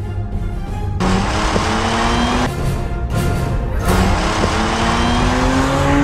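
Audi S5 Convertible engine accelerating hard, its pitch rising through one gear, dropping at a shift about two and a half seconds in, then climbing again in the next gear, over road and wind noise. Music plays under it at the start.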